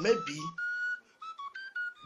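Background music: a high, whistle-like melody of short held notes stepping up and down.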